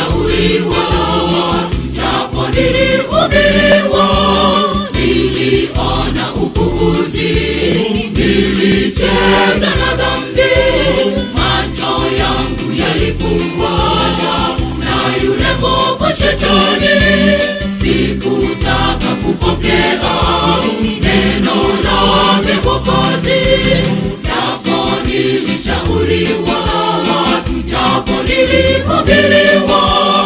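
Choir singing a Swahili gospel song over instrumental backing with a steady beat.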